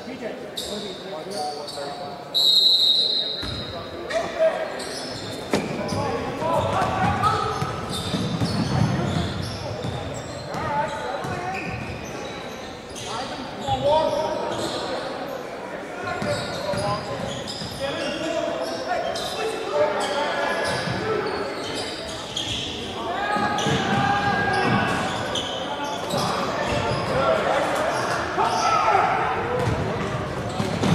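Basketball game sound in an echoing gymnasium: a ball dribbling on the hardwood, sneakers squeaking and players' and spectators' voices. A shrill tone lasting about a second sounds near the start.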